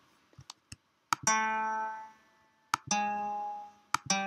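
Sampled acoustic guitar in Logic Pro X playing single bass notes from the score, one at a time: two plucked notes about a second and a half apart, each ringing and fading, the second a little lower, and a third starting at the very end. A few soft clicks come before the first note.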